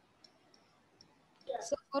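A few faint, sharp clicks over near silence, then a woman starts speaking near the end.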